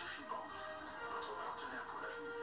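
Broadcast music with a voice over it, playing from a television's speaker and picked up in the room.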